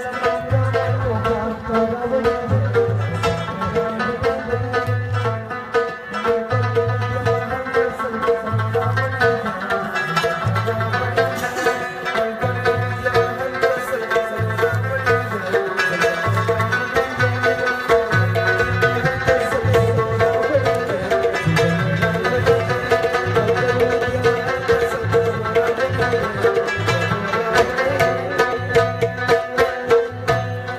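Live Afghan folk music on rubab, harmonium and tabla: sustained harmonium tones and plucked rubab over deep tabla strokes about once a second.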